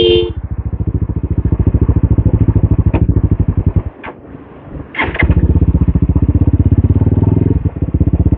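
A TVS Apache's single-cylinder four-stroke motorcycle engine running under way with a rapid, even pulsing beat. The beat drops away for about a second a little before the middle, then comes back.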